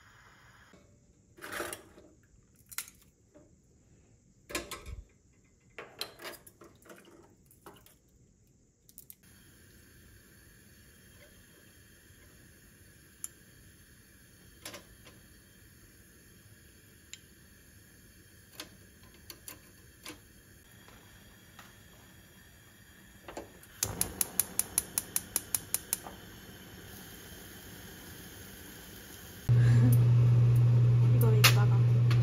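Kitchen cookware and utensils clinking and knocking at intervals during cooking. Near the end comes a quick run of about ten even clicks, then a loud steady low hum starts just before the end.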